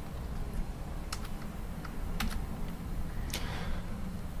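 A few scattered clicks of keys on a computer keyboard, irregularly spaced, over a steady low hum.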